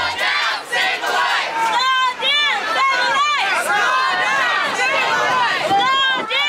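A crowd of many voices shouting and chanting together, loud and overlapping.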